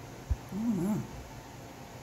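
A brief soft thump, then a short wavering vocal sound whose pitch rises and falls twice.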